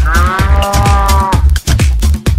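A cow mooing once, for about a second and a half, dubbed over electronic dance music with a steady kick-drum beat.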